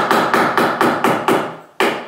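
Hammer tapping a wooden board along a wooden floor, driving it snug against the next board to close a tight seam. A quick run of light blows, about six a second, stops about one and a half seconds in; one more blow follows near the end.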